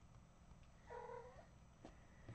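A cat meowing once, short and faint, about a second in.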